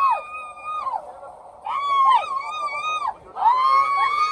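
People on a train whooping in long, high, drawn-out calls, several voices overlapping, each call held about a second and falling away at the end, about three in a row.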